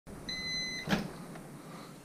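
Over-the-range microwave oven giving one long, high end-of-cycle beep, about half a second long, the signal that its heating cycle has finished. The beep is followed by a sharp click as the door is opened.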